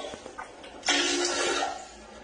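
A short, sudden burst of water splashing and sloshing in a toilet bowl about a second in, stirred by a dog with its head down in the bowl.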